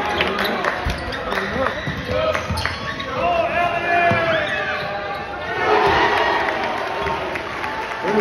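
Basketball bouncing on a hardwood gym floor as it is dribbled, over a crowd talking in the hall. The crowd grows louder a little past halfway.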